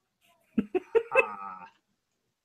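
A person's voice: a hesitant, drawn-out "uh", broken at first by a few short catching sounds.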